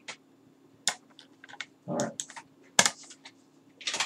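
Computer keyboard keys being tapped, about six short irregular clicks with the loudest near the three-second mark, over a faint steady low hum.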